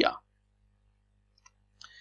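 Near-silent room tone with a steady low hum, broken by a few faint clicks about a second and a half in and again just before the end.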